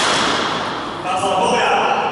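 People's voices calling out in a large sports hall, over a steady rush of noise that sets in suddenly at the start.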